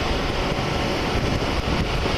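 Steady wind noise buffeting the microphone over the low drone of a cruiser motorcycle riding at road speed.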